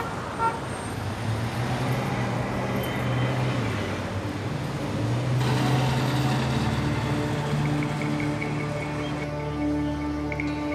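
Street traffic noise with cars driving past and a short car-horn toot right at the start, under soft background music of sustained low notes that fills out in the second half.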